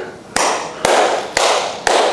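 Loud, evenly spaced percussive hits, about two a second, each a sharp strike that fades quickly.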